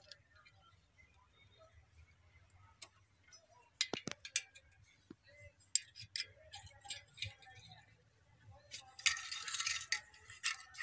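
A steel spanner clinking against the bolts of a tractor clutch pressure plate as they are worked loose: scattered sharp metallic clicks, with a short scraping burst near the end.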